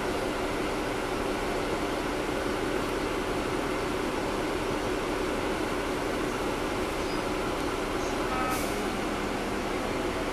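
Caterpillar C13 diesel engine and its engine cooling fans running steadily in a NABI 40-SFW transit bus, heard inside the cabin from the rear seats as a constant hum and rush. A short high-pitched sound cuts in about eight and a half seconds in.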